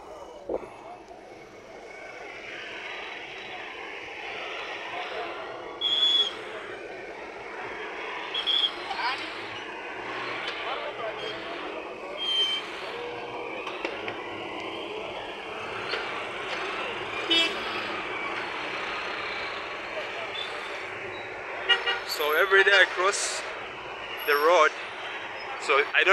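Steady road traffic noise from passing cars and motorcycles, with several short, high horn toots about six, nine and twelve seconds in. People's voices come in near the end.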